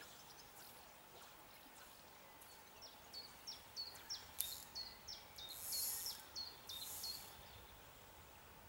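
A small songbird singing a run of short, high notes, each slurring downward, about two a second for some five seconds, with two brief hissy bursts near the end. Faint steady background hiss underneath.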